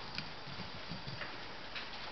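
A dog's claws clicking a few times, faintly and irregularly, on a hard floor.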